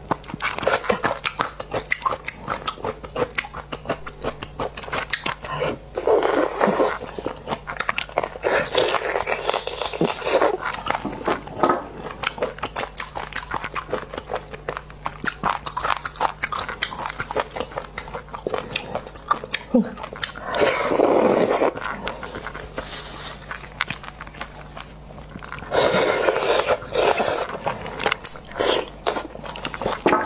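Close-miked eating sounds of spicy braised beef bone marrow: chewing and biting with many small mouth clicks, broken by several louder, longer bursts as the marrow is sucked from the bone sections.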